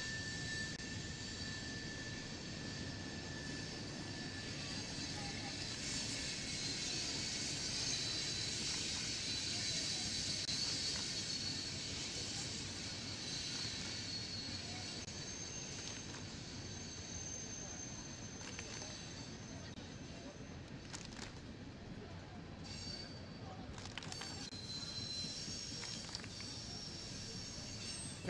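Freight train of tank cars rolling past: a steady rumbling noise with thin, high-pitched tones over it. It is loudest about ten seconds in, then eases off, with a few sharp clicks near the end.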